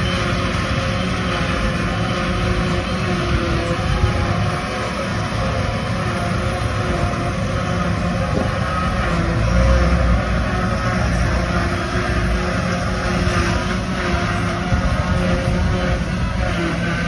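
Tractors and a tractor-drawn JF FCT 1060 forage harvester working in silage, a steady loud mechanical drone of engines and the chopper blowing cut grass into a trailer, with a deeper swell about ten seconds in.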